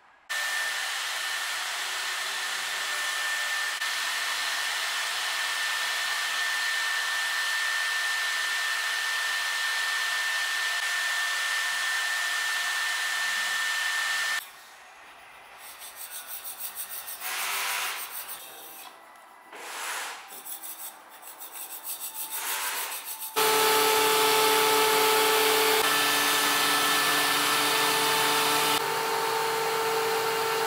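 A woodworking machine running steadily with a high whine for about fourteen seconds. Then irregular rubbing and brushing strokes as a hand wipes wood chips off a machine table, and from about two-thirds of the way through, a machine motor running steadily with a hum of several pitches.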